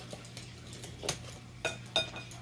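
A few light clinks and knocks of paintbrushes being gathered up by hand, over a low steady hum.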